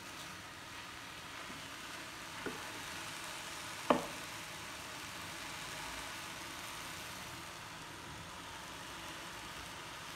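Keerai greens frying without oil in a kadai: a steady sizzle, with a spoon knocking sharply against the pan once about four seconds in and more faintly once a little earlier.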